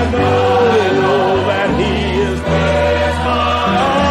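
Gospel singing with accompaniment: voices holding long notes over steady low bass notes that change every second or so.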